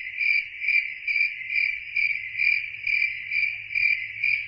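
Cricket chirping sound effect: a steady high trill pulsing about twice a second. It is the stock comic cue for an awkward silence while a question goes unanswered.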